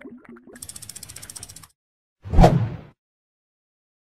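Animated outro sound effects: a few bubbly pops, then a rapid run of even ratchet-like clicks lasting about a second. About two and a half seconds in comes a single short, loud hit with a deep low end, the loudest sound, dying away within about half a second.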